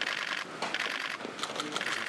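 Many camera shutters firing in rapid bursts, several cameras overlapping, as press photographers shoot continuously.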